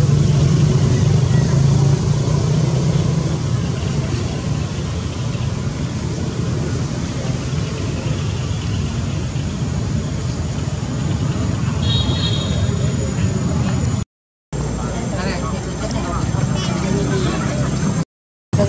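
Steady low rumble of outdoor background noise, with faint voices mixed in.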